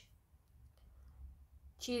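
A quiet pause over a low hum, with a couple of faint clicks, then a woman's voice starts again near the end.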